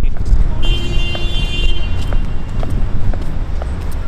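City street noise: road traffic with a heavy low rumble. A high-pitched ringing tone sounds for about a second near the start.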